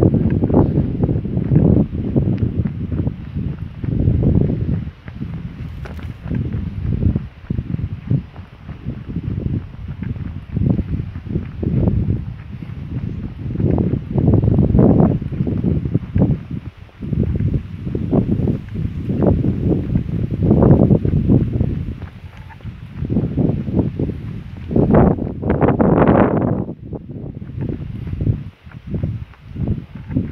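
Wind buffeting a handheld camera's microphone in irregular low rumbling gusts, with a stronger, brighter gust near the end.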